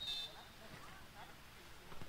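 Faint ambient sound from a football pitch: distant players' voices calling out, with a brief faint high tone at the start.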